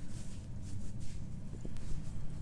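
Soft rustling and faint ticks of a felted wool backpack and its drawstring being handled and pulled, over a steady low background hum.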